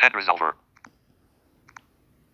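The phone's screen reader voice speaks briefly at the start, then a few faint short clicks come in two pairs about a second apart: the screen reader's ticks as the share menu opens and focus moves.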